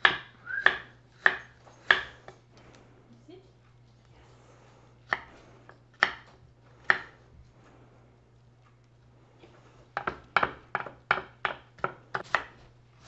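Knife chopping radishes on a wooden cutting board: four evenly spaced chops in the first two seconds, three more a few seconds later, then a quicker run of chops near the end.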